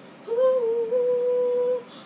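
A teenage girl's voice singing a cappella, holding one long note with a slight bend in pitch at its start.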